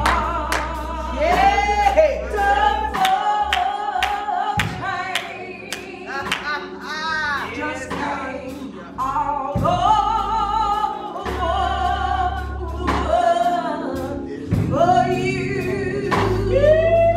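Gospel song playing: a singing voice carries the melody over sustained bass notes and a steady percussive beat.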